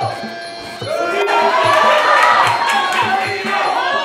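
Crowd shouting and cheering at a Muay Thai fight, swelling louder about a second in, over traditional Muay Thai fight music with a steady drum beat and a wailing reed pipe.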